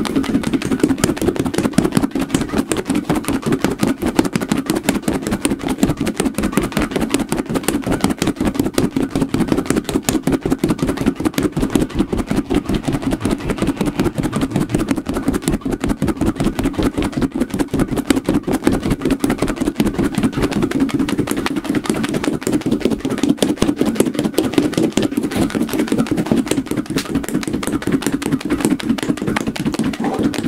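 Fuzzy squishy ball shaken very fast, giving a dense, even run of rapid swishing strokes.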